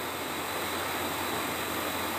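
Steady, even hiss of background noise with no speech and no distinct event.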